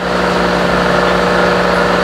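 Aquarium pump running with a steady electric hum and a whir over it.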